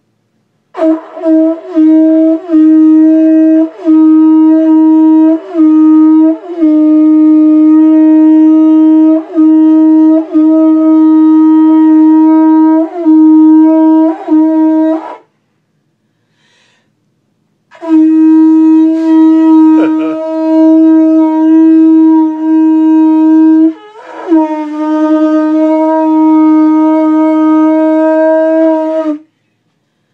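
A conch shell blown as a horn: one loud, steady held note, cut by short breaks every second or two, in two long blasts of about fourteen and eleven seconds with a pause of a couple of seconds between them.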